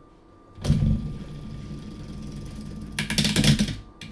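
LEGO Technic transmission spun by hand: plastic gears and clutch drum whirring steadily after an abrupt start about half a second in, then a fast run of ratchet clicks near the end as it slows.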